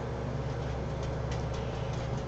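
Steady low hum with a faint even hiss: room tone, with no distinct event.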